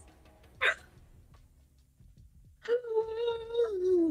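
A short sharp breath about half a second in, then, near the end, a woman's high-pitched excited whine held for over a second at one pitch before dropping off as it ends.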